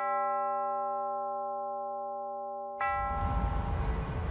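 A single chime strike from a wall clock striking midnight rings and slowly fades for nearly three seconds. Near the end a second strike leads straight into music with a heavy low beat.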